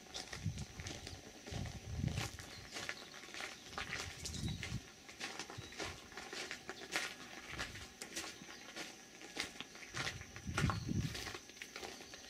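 Footsteps on a crushed-gravel path: a run of crunching steps with low thuds, under a faint steady high-pitched hum.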